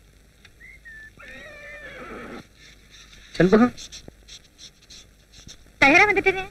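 A horse whinnying: one quavering call starts about a second in and lasts over a second. Two short, louder cries follow, one mid-way and one at the end.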